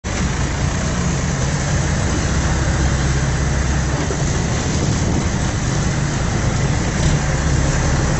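Boat's engine running steadily under a constant rush of wind and water noise.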